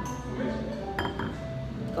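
Glass and porcelain tableware clinking: a stemmed glass set down on a porcelain saucer, with one sharp, ringing clink about a second in.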